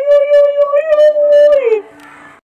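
A long, loud howling call held on one steady high pitch, sliding down in pitch and cutting off near the end.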